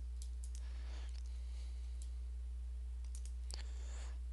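A handful of faint computer mouse clicks, scattered, with three close together near the end, over a steady low hum.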